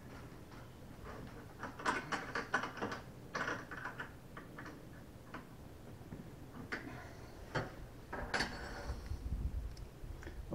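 Scattered small metallic clicks and clinks of hardware handled by feel inside a fiberglass boat's bow: nuts and a backing plate being fitted onto a bow eye's threaded studs. The clicks come in two loose clusters, one a couple of seconds in and another near the end.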